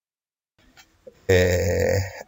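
A man's voice, after about a second of dead silence, holding one steady, drawn-out vocal sound, like a hesitation 'aah', for most of the last second.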